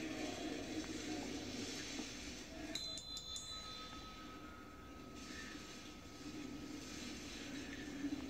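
Faint, steady room noise of a large hall heard through a television speaker, with a few sharp clicks about three seconds in.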